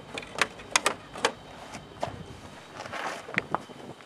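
Handling noises: several sharp clicks in the first second and a couple more a little after three seconds, with rustling in between, as a power cable is tucked away against an ATV's plastic body panels.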